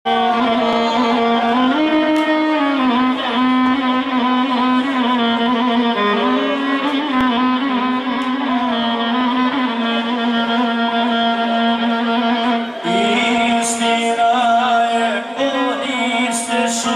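Live violin playing a slow melody with slides between notes, over a steady held keyboard chord.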